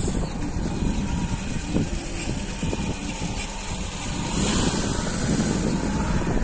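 Street background: a motor vehicle's engine runs nearby as a steady low rumble.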